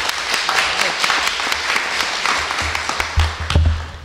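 Audience applause, many hands clapping at once, with a low thudding rumble in the last second or so.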